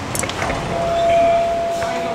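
A steady electronic tone starts about half a second in and holds, over a background hiss of street and room noise.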